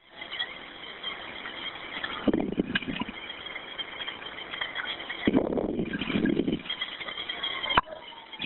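Background noise on an open 911 telephone line from a caller outdoors, with a steady faint hiss and two stretches of muffled, indistinct sound, one about two seconds in and a longer one past the middle.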